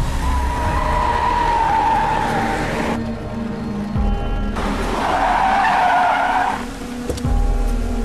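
Car tyres skidding and squealing on a wet road: a long squeal falling slowly in pitch over the first three seconds, then a second shorter squeal near the middle. A background film score plays underneath.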